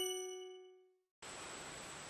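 The last struck chime note of an intro jingle ringing out and fading away, followed by a brief silence and then a steady faint hiss from about a second in.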